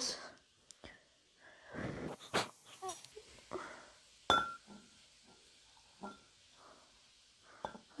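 Glass mugs handled on a table: a few soft knocks and scrapes, then one sharp glass clink with a short ring about four seconds in, as one mug is brought against the other.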